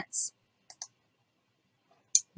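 Two quick computer mouse clicks, about a tenth of a second apart, a little over half a second in, as the browser switches to another listing page; the rest is near silence.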